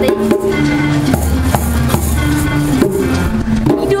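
Djembe hand drums played by a group, with music of held bass and melody notes under the drum strokes.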